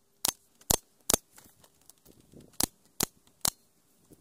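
Pneumatic nailer-stapler firing six times into a wooden batten, in two runs of three shots about 0.4 s apart with a pause of about a second and a half between the runs; each shot is a sharp snap.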